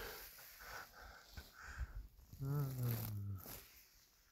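A man's short wordless vocal sound, like a drawn-out hum, lasting about a second a little past the middle, over soft rustling and breath noise.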